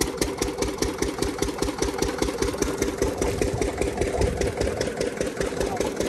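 Single-cylinder stationary diesel engine running with an even beat of about six firings a second, driving a sugarcane crusher through a flat belt.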